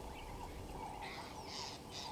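Wild birds calling in the bush, with a few harsh, scratchy calls in the second second over fainter warbling.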